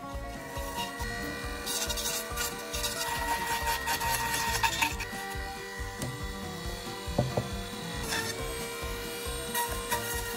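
Dremel rotary tool on a flex shaft running steadily with a router bit, carving a window opening into polystyrene insulation foam: a steady motor whine with scraping and rubbing as the bit bites into the foam.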